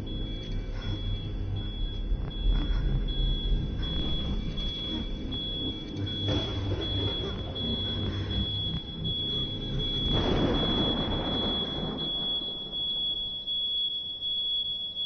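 Tense film underscore: a low rumbling drone under a thin, high tone that pulses at first and then holds steady, with a swell of rushing noise about ten seconds in.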